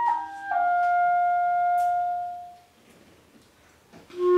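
Clarinet playing a phrase that steps down to a lower note held steadily for about two seconds before fading out, then stops.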